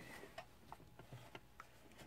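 Near silence with a few faint, scattered clicks from hands handling fabric at a stopped sewing machine.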